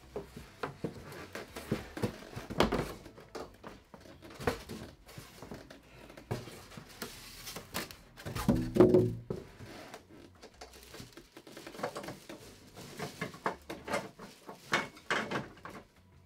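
Handling noise from packing materials: scattered knocks, scrapes and rustles of cardboard, plastic bag and polystyrene as a large TV is tilted and its packing is moved. About halfway through, a louder squeaking scrape as a polystyrene packing block is pulled out from under the set.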